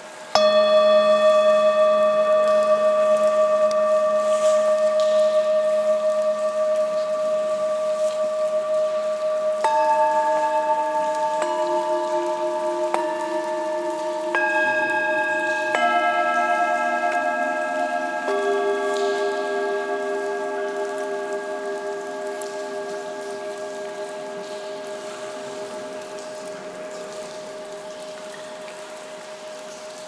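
Antique Himalayan singing bowls struck one after another in a slate cave, each giving a long steady ringing tone. The first strike comes just after the start, and more follow at about 10, 11, 14, 16 and 18 seconds, so the tones pile up and then slowly fade together.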